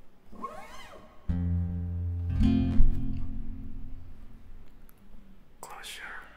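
Acoustic guitar chords: one struck about a second in and another about a second later, both left to ring and slowly fade as the song's opening. Before them comes a short rising-and-falling voice-like sound, and near the end a sharp breath in.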